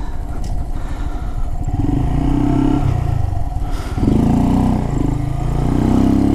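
Honda Grom's 125 cc single-cylinder engine pulling away under throttle, its pitch rising, dropping at a gear change about four seconds in, then rising again.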